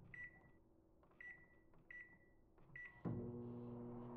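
Microwave oven keypad beeping four times as it is set, then the oven starting up about three seconds in with a steady hum.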